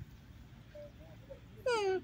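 A monkey gives one short, loud call near the end, falling in pitch.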